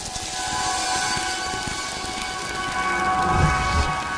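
Synthesized sound design of an animated logo sting: a dense, hissing wash of noise with several steady tones held over it, swelling in the first second, and a low rumble coming in near the end.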